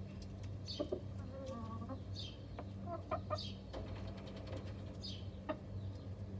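Domestic chickens clucking softly a few times, with a high chirping call repeated about every second and a half and a steady low hum underneath.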